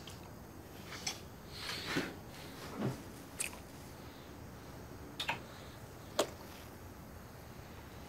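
Close kissing: a few soft, short lip smacks and breaths, with the rustle of clothes and bedding as the two embrace, over a low room hiss.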